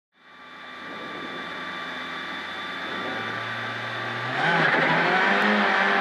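Renault Clio R3 rally car's 2.0-litre four-cylinder engine heard from inside the cockpit, fading in and running at steady revs, then revving higher and getting louder about four seconds in.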